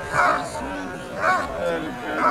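German shepherd barking at a helper hidden in a blind, the steady bark-and-hold of IPO protection work: two loud barks about a second apart. People talk faintly between the barks.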